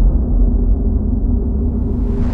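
Loud, steady deep rumble with a faint held low tone over it, the drone of a cinematic logo-intro sound effect.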